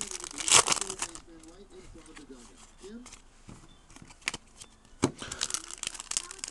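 Foil trading-card pack wrapper crinkling as it is handled and torn open, loudest in the first second, then quieter with a couple of sharp crackles near the end.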